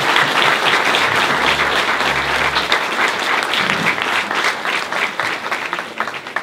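Audience applauding: loud, dense clapping from many hands that eases slightly near the end.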